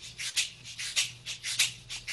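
A hand-shaken rattle keeping an even rhythm, about four to five short shakes a second, often in pairs.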